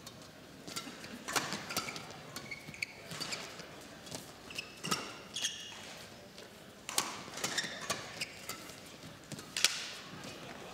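Badminton rally: sharp racket hits on the shuttlecock at irregular intervals, with short squeaks of court shoes on the mat between them.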